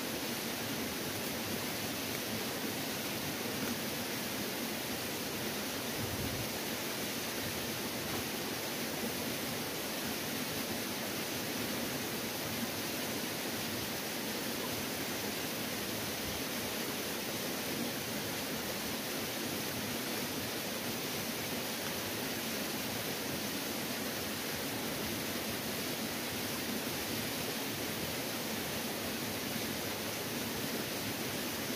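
A steady, even rushing noise that does not change and has no separate sounds in it.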